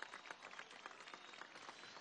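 Faint, scattered hand clapping from a crowd, heard as sparse irregular claps over a low background hiss.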